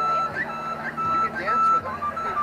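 A flute-like wind instrument playing a slow melody of clear held notes, with quick rising flicks between them, over crowd chatter.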